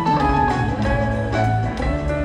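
Live rock band playing an instrumental jam, with electric guitars, bass and drum kit, recorded from the audience in an arena.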